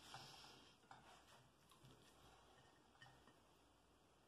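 Near silence, with a few faint soft clicks and rustles of hands pressing and handling grated carrot on a glass plate.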